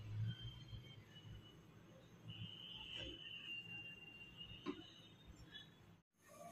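Quiet kitchen sounds of a wooden spatula stirring simmering milk and rice in a frying pan, with two soft knocks of the spatula against the pan. A faint high steady tone runs through the middle.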